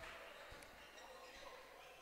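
Near silence: faint sports-hall ambience with a couple of faint thumps of a handball bouncing on the court.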